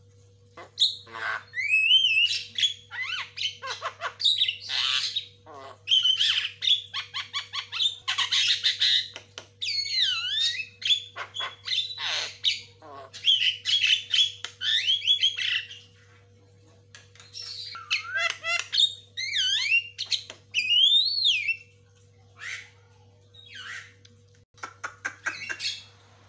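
Javan myna (jalak kebo) calling in a rapid, varied chatter of harsh squawks, clicks and whistles that glide up and down, broken by a few short pauses in the second half.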